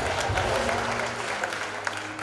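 Audience applauding: many hands clapping at once, with a low steady hum underneath.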